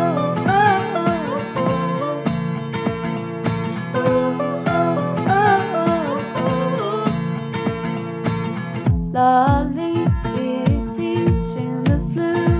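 A pop song playing: a female singer's voice over strummed acoustic guitar and a steady, deep kick-drum beat.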